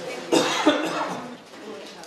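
A person coughing, two sharp coughs in quick succession a little after the start, with people talking in the room.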